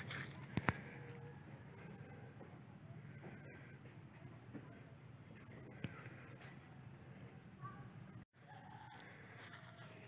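Chickens clucking faintly in the distance, with soft footsteps on mown grass.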